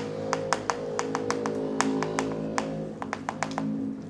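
Chalk tapping and scratching on a blackboard in a rapid, irregular series of sharp clicks as a word is marked over, with soft, steady background music underneath.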